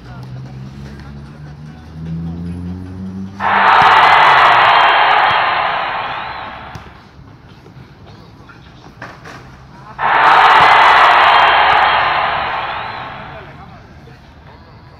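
A crowd cheering and applause sound effect, dubbed in twice: each burst starts suddenly, about three and a half seconds in and again at ten seconds, and fades out over about three seconds. A low music bed plays under the first few seconds.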